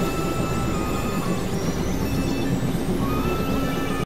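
Experimental synthesizer drone-and-noise music: a dense, steady wash of noise over a low drone, with thin high tones held for a second or so at a time.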